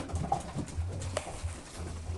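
English Springer Spaniel puppies, four months old, scuffling in play with low growling, and a sharp click about a second in.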